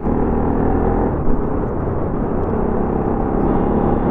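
Bajaj Pulsar NS200's single-cylinder engine running steadily while the bike is ridden along at low speed, mixed with wind and road noise.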